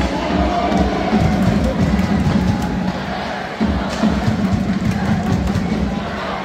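Arena PA music with a beat playing over the noise of a large hockey crowd in the stands.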